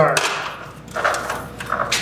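A Little Giant stepladder knocking and rattling a few times as it is handled and set in place.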